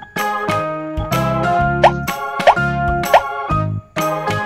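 Upbeat children's background music with a steady beat, with three short rising 'plop' sound effects about two-thirds of a second apart in the second half.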